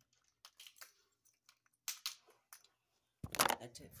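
Scattered light clicks and rustles of small plastic toy figures being handled, then a loud burst of rubbing and bumping on the phone's microphone near the end as the phone is picked up, just before a spoken word.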